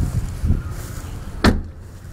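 A single sharp knock about one and a half seconds in, with a couple of softer thumps earlier, over low rumbling noise.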